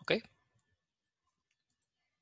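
A man says "¿ok?" briefly, then near silence with a few very faint clicks.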